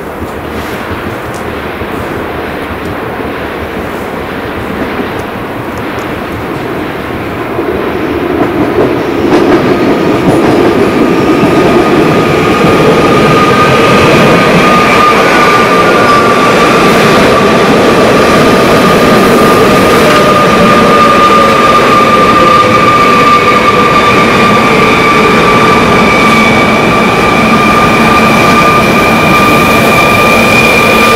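Koleje Śląskie electric multiple unit arriving at a station platform. It grows louder over the first ten seconds or so, then holds a steady whine of several tones that slowly falls in pitch as the train brakes to a stop.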